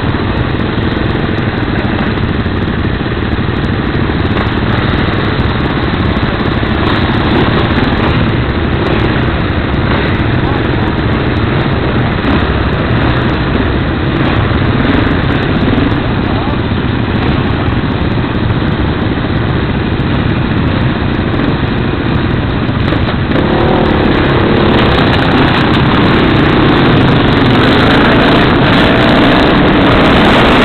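KTM LC4 660 single-cylinder four-stroke engine idling with occasional revs while waiting at the start. In the last few seconds it accelerates away, the revs rising.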